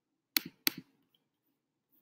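Two quick computer mouse clicks about a third of a second apart, each a sharp press followed by a softer release tick.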